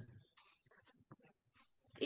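Near silence: faint room tone over a video call, with a few soft, brief sounds.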